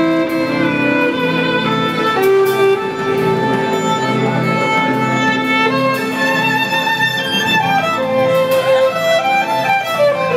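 Violin played live with a band: long bowed notes, sliding and wavering in pitch in the second half, over sustained lower instruments underneath.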